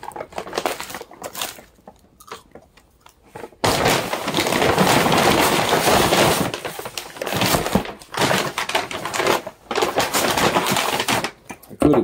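Brown paper takeout bag rustling and crinkling as food is pulled out of it, with a few light knocks against the table. It goes quiet for a moment about two seconds in, then the crinkling picks up again and runs on.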